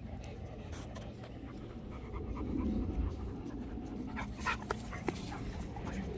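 A dog panting, with a few short clicks a little past the middle.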